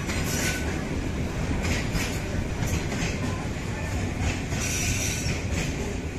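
Freight train of bogie oil-tank wagons rolling past on a curve: a steady rumble and clatter of wheels on the rails, with repeated high-pitched wheel squeal coming and going.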